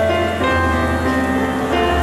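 Slow piano-led instrumental intro to a live ballad: held chords change every half second or so over a low, sustained bass note.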